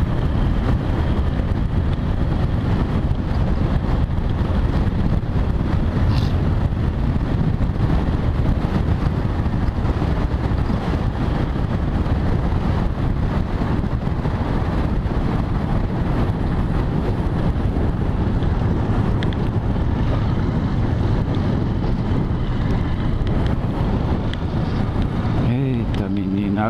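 Continuous wind buffeting on the microphone over a motorcycle engine running at steady road speed, making a loud, unbroken low rumble.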